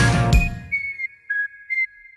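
Outro jingle music that ends on a final hit, followed by three short high whistled notes, the last one left ringing and fading out.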